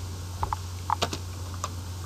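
Computer keyboard keystrokes: a handful of short, irregularly spaced key clicks as a name is typed, over a steady low hum.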